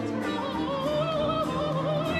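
A female opera singer singing a vibrato-laden line that climbs in pitch during the first second, accompanied by a period-instrument baroque orchestra with bowed strings.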